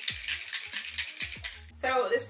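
Plastic spray bottle of setting mist shaken hard, its contents rattling in rapid, even strokes that stop shortly before the end.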